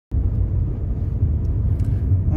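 Steady low rumble of a Skoda Fabia on the move, heard from inside the cabin: engine and road noise while driving.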